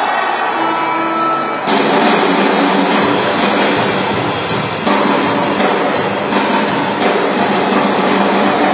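Live rock band kicking into a song on electric guitar, bass and drum kit. Guitar notes ring out alone at first, then drums with cymbals and the full band come in just under two seconds in, and the bass fills out the low end about a second later.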